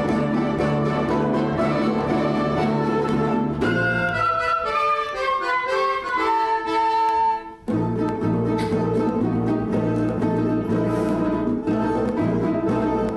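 Russian folk orchestra of domras, balalaikas and bayans playing an Uzbek folk dance. About four seconds in the low instruments drop out and a high melody runs downward in steps for a few seconds. Then the full ensemble comes back in.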